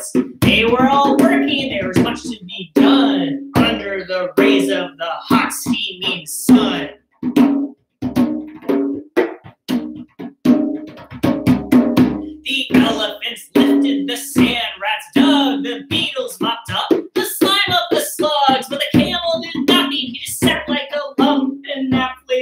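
Zarb, a Middle Eastern goblet drum, played with bare hands in a fast, rhythmic pattern of sharp slaps and ringing low tones. About a second in, a note bends in pitch as the head is pressed.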